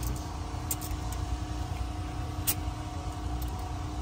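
A steady machine hum over a low rumble, like an engine or generator running nearby. A couple of short sharp metallic clicks come through it, from hose clamps on the turbo boost pipe being worked by hand.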